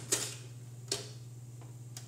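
Two light clicks of small toy trains being handled, the first just after the start and a fainter one about a second later, over a steady low hum.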